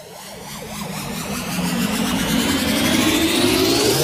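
A sound effect swells steadily louder and rises in pitch across the four seconds, with an engine-like rumble underneath. It builds up to an animated logo reveal.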